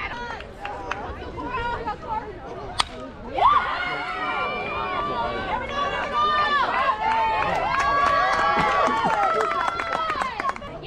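A softball bat cracks once against a pitched ball, a single sharp hit. Players and spectators then shout and cheer in overlapping high voices.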